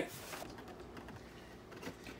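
Faint, irregular light clicks and rustles, as of small objects and cardboard being handled.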